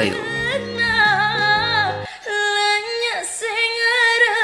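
A woman singing solo, her voice bending and ornamenting the melody, over steady low accompaniment notes. About halfway through the accompaniment drops out and she carries on alone, holding long notes.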